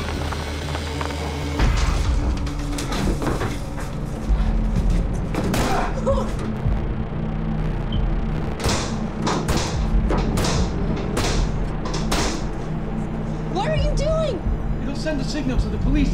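Film soundtrack: a low, steady music drone under a run of about six heavy thuds, a second or less apart, in the middle of the stretch.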